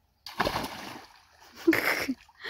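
A child jumping feet first into a shallow muddy pool: one loud splash about a quarter second in, dying away over half a second, followed by water sloshing around him.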